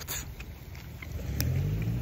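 A low, steady, engine-like hum that grows louder over the second half, with a faint click about one and a half seconds in.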